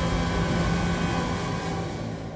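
Horror-trailer sound design: a low rumbling drone with many held tones, slowly fading away.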